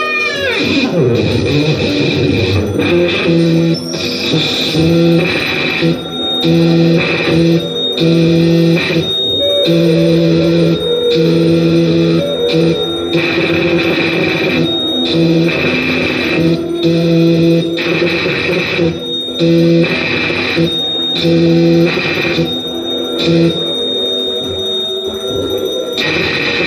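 Live experimental noise music run through effects pedals: a distorted drone made of a low steady tone and a higher one, cutting in and out in irregular chopped blocks over a harsh wash of noise.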